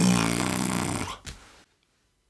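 A man laughing with his mouth closed, a nasal chuckle lasting about a second that trails off, then a short breath.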